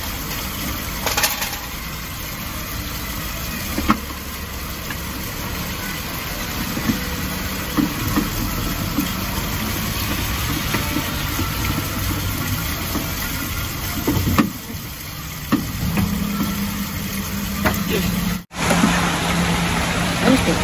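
A steady low engine hum, like a vehicle idling, runs throughout, with a few light clicks of handling on top.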